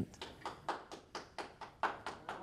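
Scattered applause from a small audience, with individual hand claps heard separately and at an uneven pace.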